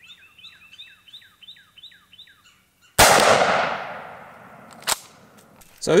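A single 12-gauge shotgun shot from an 18.5-inch-barrel Weatherby pump gun about halfway through, with a long echo that fades over about two seconds. Before it, a bird sings a repeated series of falling notes, about three a second, and a short sharp click comes near the end.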